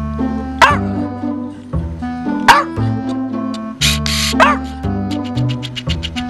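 A puggle barking three times, about two seconds apart, demanding to be let in, over background music with a steady beat.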